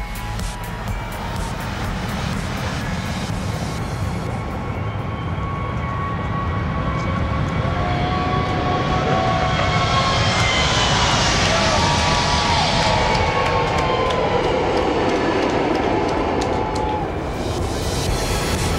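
Boeing 737 MAX 8 jet engines (CFM LEAP-1B turbofans) at takeoff thrust as the airliner rolls and lifts off. The engine noise builds, and its whine drops in pitch as the jet passes, loudest around ten to thirteen seconds in. Music plays quietly underneath.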